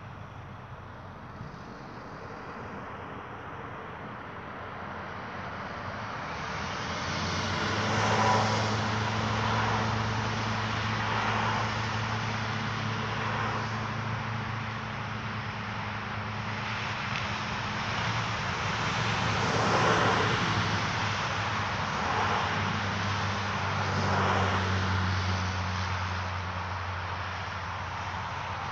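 A steady low motor hum with rushing noise, growing louder about six seconds in and then swelling and easing several times.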